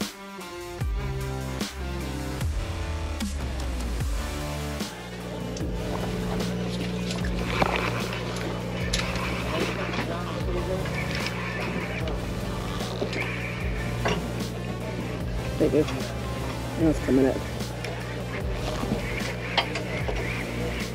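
Background music for the first five seconds, then it cuts to a steady low hum of the fishing boat's machinery, with faint, indistinct voices on deck.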